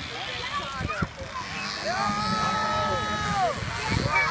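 Small moped engines buzzing as the racers ride past, with people talking over them. Around halfway through, one engine holds a steady high note for over a second, then drops away.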